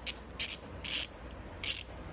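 Handheld ratcheting screwdriver handle worked back and forth, its pawl clicking over the gear teeth in four short rasping bursts.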